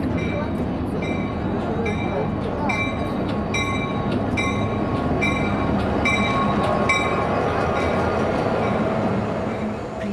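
Diesel freight locomotive running as it pulls slowly along the platform, with a bell ringing in steady strokes about one every two-thirds of a second. The bell stops about seven seconds in while the engine rumble goes on.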